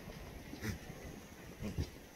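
Black goat kid making two short, soft low calls about a second apart.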